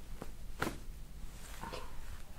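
A single sharp crack a little over half a second in, with a fainter click just before it, as a chiropractor's hands thrust on a patient's upper back: the release of a rib joint that the chiropractor takes to be out of place.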